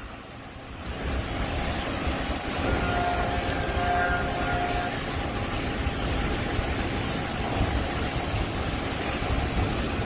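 Wind buffeting the microphone outdoors, with a low rumble of distant traffic. A faint, steady pitched tone sounds for about two seconds, beginning near the three-second mark.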